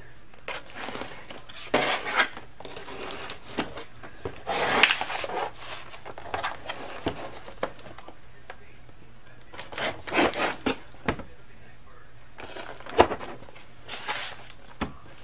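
Cardboard box being handled and opened: intermittent scraping and rustling of cardboard, with a sharp tap about a second before the end.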